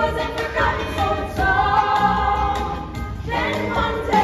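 Stage musical cast singing together in chorus, holding one long note through the middle.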